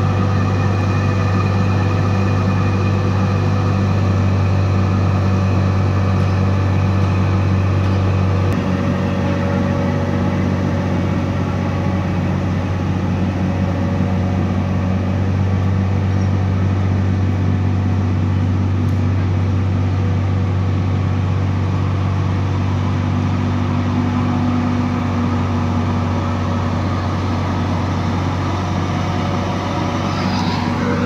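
Tata Hitachi 200-class crawler excavator's diesel engine running steadily as the machine works itself down off a low-bed trailer, with a deep drone that drops a little in level about eight seconds in.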